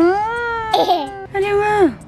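A toddler's wordless vocal cries: two drawn-out calls, the first rising in pitch and held, the second held and then sliding down sharply near the end.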